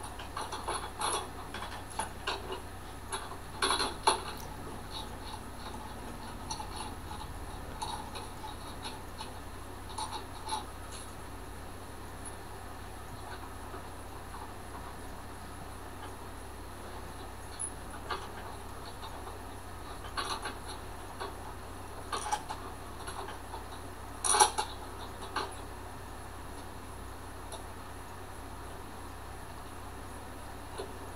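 Scattered light metallic clicks and clinks from nuts being run onto and tightened on the U-bolt clamp of a trailer winch mount, with long gaps between them and a louder clink a few seconds from the end. A faint steady low hum runs underneath.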